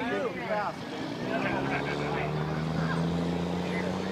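Pickup truck engine revving on a truck-pull track, its pitch climbing slowly and steadily from about a second in.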